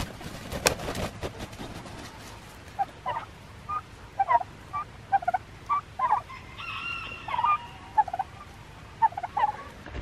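Turkeys calling: a string of short clucks and chirps, with one longer drawn-out call about seven seconds in. A brief flurry of wing flapping comes in the first second.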